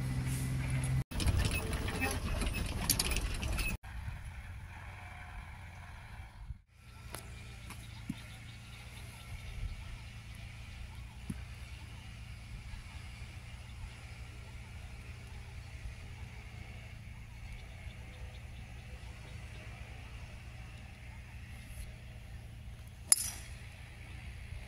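Quiet outdoor background with a steady low hum, then one sharp crack near the end: a golf club striking a ball off the tee.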